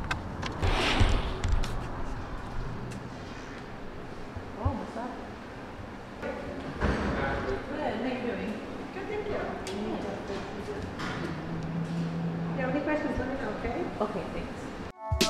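Indistinct voices and general room noise in a small restaurant, with light movement and clatter; the first couple of seconds hold rustling handling noise.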